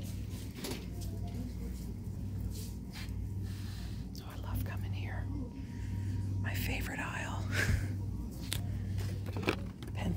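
Shop ambience: a steady low hum under soft, indistinct speech that is clearest a little past the middle, with occasional light clicks and rustles of handled merchandise.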